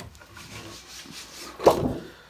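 A flexible printer build sheet sliding and rubbing under a hand across the bed of a 3D printer, then a short loud flexing clatter about one and a half seconds in as the sheet is lifted off.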